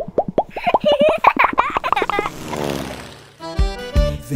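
Cartoon transition sound effects: a fast run of short popping blips, about eight a second, for two seconds, then a downward glide. A children's music jingle starts near the end.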